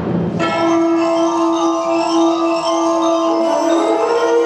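A marching band playing: after a brief hit at the very start, a long chord is held from about half a second in while higher mallet-percussion notes, glockenspiel-like, ring over it.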